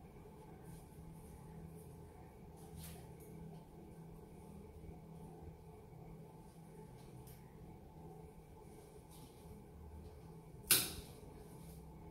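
A single sharp snip about three-quarters of the way through, the loudest sound, as pruning shears cut through the woody trunk of a bakul (Spanish cherry) bonsai. Before it, a few soft clicks of handling over a faint steady hum.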